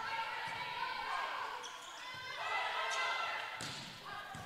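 Faint gym sound during a volleyball rally: distant voices of players and spectators, with a ball strike a little before the end.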